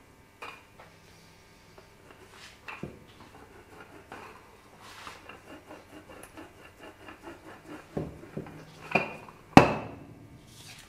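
Wooden rolling pin with handles knocking and rolling on a stainless steel counter while flattening a ball of bun dough: scattered knocks and a light, even rattle as it rolls back and forth. The loudest is one sharp knock near the end as the pin is set down on the steel.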